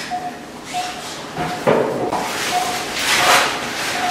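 Operating-theatre patient monitor beeping with the pulse-oximeter pulse tone, one short steady beep about every 0.7 seconds. Two swells of rustling, handling noise come in about a third of the way in and again near the end.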